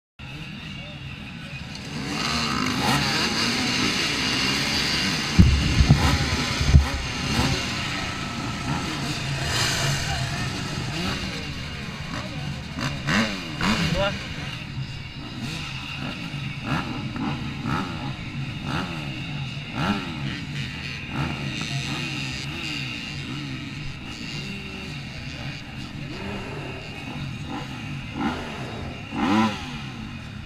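Several off-road motorcycle engines running and revving as a row of riders pulls away at a race start, their pitch rising and falling over and over. A few heavy low thumps come about five to seven seconds in.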